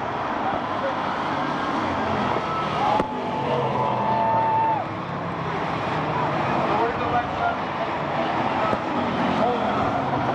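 Bomber-class stock car engines running at moderate, uneven speed around the track, under a steady murmur of grandstand spectators talking. About three seconds in, a steady high tone sounds for nearly two seconds.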